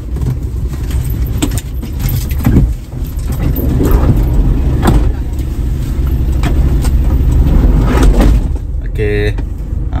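A car's engine idling, heard as a steady low rumble inside the cabin, with scattered clicks, knocks and rattles as a child climbs out of the car.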